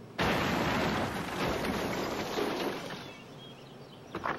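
A sudden loud blast as part of a house is blown apart, followed by the noise of debris coming down, fading away over about three seconds.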